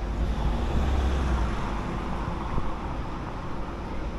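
Road traffic on a city street, with steady low rumble. It swells for a couple of seconds about a second in, as a vehicle goes by.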